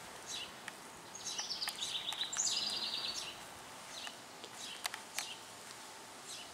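A songbird sings a rapid trill of high repeated notes for about two seconds, stepping down in pitch partway through, with a few short high chirps before and after it.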